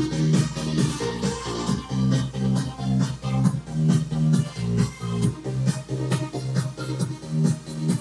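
Electronic dance music with a steady beat and strong bass, played through a Harman Kardon Go + Play 3 portable Bluetooth speaker.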